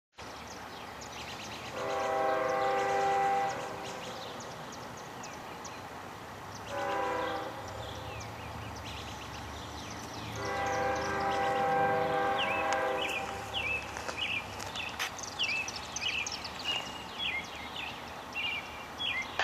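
Locomotive air horn sounding three blasts in a long, short, long pattern.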